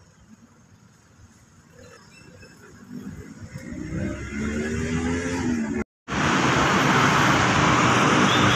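A motor vehicle's engine comes closer, growing steadily louder from about three seconds in. The sound cuts out for an instant near the six-second mark, then loud, steady vehicle noise continues.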